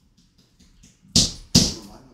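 Two sharp taps about half a second apart, a little over a second in, after a few faint clicks.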